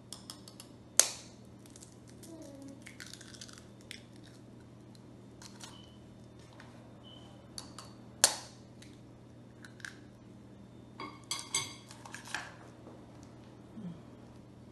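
Sharp clinks and knocks on a ceramic mixing bowl: a single loud knock about a second in, another about eight seconds in, then a quick run of clinks a few seconds later, over a faint steady hum.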